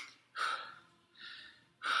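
A man breathing hard after exercise: two heavy breaths, the second fainter.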